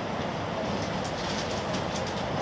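Steady running noise of an N700A Shinkansen train heard inside the passenger cabin: an even, unbroken noise from the moving train.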